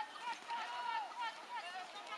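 A faint, distant voice talking in short phrases, the words unclear.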